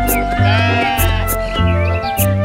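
A sheep bleating over upbeat children's song music with a steady beat and bass line.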